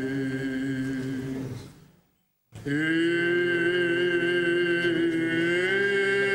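Male Byzantine chanting, long sustained notes with slow small turns of pitch. It fades away about two seconds in, breaks off into half a second of silence, then resumes at full strength.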